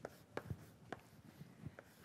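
Chalk writing on a blackboard: a few faint, sharp taps and short scrapes of the chalk strokes, about five in two seconds.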